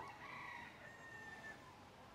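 A faint, distant bird call: one drawn-out note lasting about a second and a half, over quiet room tone.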